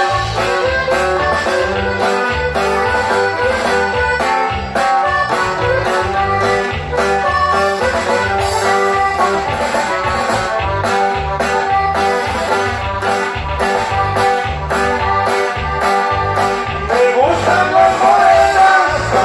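Live band playing an instrumental passage: an accordion carries the melody over guitar, bass and a steady beat. Singing comes in near the end.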